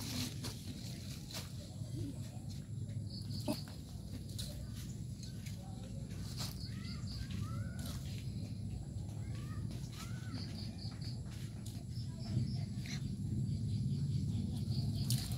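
Birds chirping outdoors: short high notes in quick groups of three or four, repeating every few seconds, over a steady low rumble with scattered small clicks.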